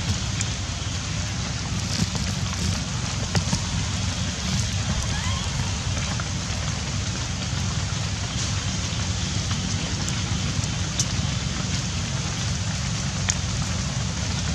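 Steady rain: a constant hiss with scattered sharp drips and a low rumble underneath.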